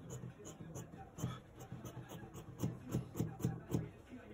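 Fabric scissors cutting through cloth, faint, with a run of about five quick snips spaced roughly a third of a second apart in the second half.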